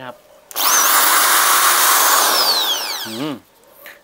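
Reaim 500 W corded hammer drill run free with no load: the trigger is pulled about half a second in, the motor spins up with a short rising whine, runs for about two seconds, then the trigger is released and it winds down with a falling whine near the three-second mark.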